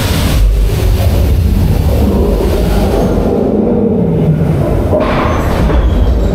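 Roller coaster train rumbling along its steel track through a dark, enclosed show section, with a brief hiss about five seconds in.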